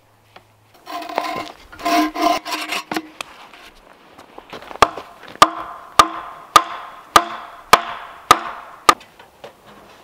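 Wooden mallet striking a log in a steady rhythm, about eight blows a little over half a second apart, each with a hollow wooden ring. Before the blows there is a denser stretch of knocking and ringing from the same wood.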